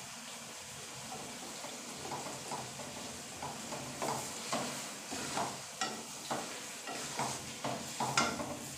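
Wooden spatula stirring and scraping potatoes, peas and carrots around an aluminium kadhai, over a steady sizzle as the softened vegetables fry on a high flame. The scrape strokes come about twice a second, mostly in the second half.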